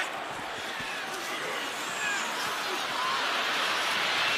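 Football stadium crowd noise, a steady din of many voices that grows a little louder toward the end, with a few faint single voices heard over it.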